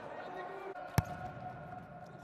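A futsal ball struck once, a sharp thud about halfway through, over hall noise and voices.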